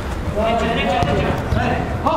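Five-a-side football players calling and shouting to each other in an indoor hall, with thuds of the ball being kicked and feet on the artificial turf.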